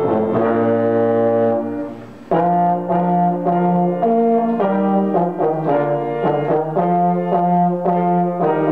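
A valved brass horn with an upright bell and a grand piano play a duet. A held chord dies away about two seconds in, then after a brief gap the two go on with a run of shorter notes.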